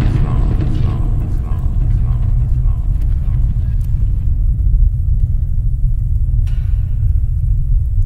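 Title-animation sound effect: a loud, steady deep rumble, with the echoing tail of a spoken line fading away over the first few seconds and a brief hiss about six and a half seconds in.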